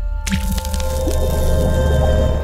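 A TV news programme's ident music: a low rumbling bed under held tones, with a sudden bright, crash-like hit about a quarter of a second in.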